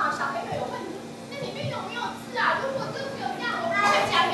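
A group of young children talking and calling out over one another.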